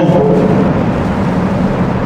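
Steady low drone of a car's cabin on the move: engine and road noise, in a short pause in the talk.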